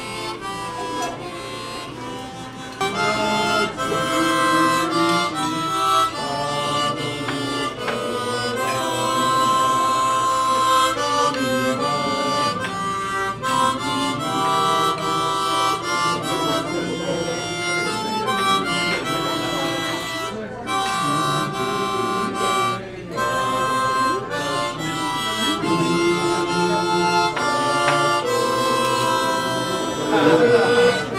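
Harmonica played solo with the hands cupped around it: a melody of held notes and chords that change pitch every second or so.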